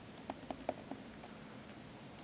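A handful of faint clicks from laptop keys being tapped, in the first second or so, over quiet room tone.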